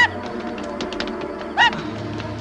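A short honking cry about one and a half seconds in, with the tail of another right at the start, over quiet background music.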